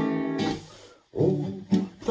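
Acoustic guitar chords ringing and dying away to a brief near-silent pause about halfway through, then struck again with fresh strums.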